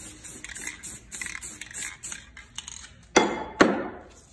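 Handling noises from spray-paint art work: a run of quick scraping, rustling and clinking sounds, then two loud, sharp noisy sounds about half a second apart, a little after three seconds in.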